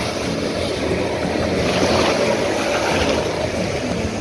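Jet ski engine running, with a steady loud rush of water and spray as the craft cuts through choppy water.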